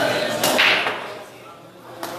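Pool break shot: one sharp crack of the cue ball smashing into the racked balls about half a second in, followed by a brief clatter of scattering balls that dies away quickly.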